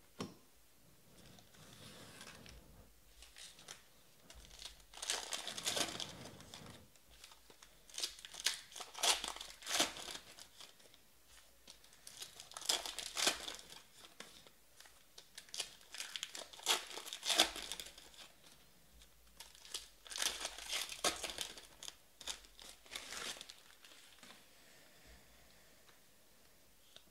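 2020 Panini Stars and Stripes baseball card pack wrappers being torn open and crinkled by hand, in repeated bursts every few seconds.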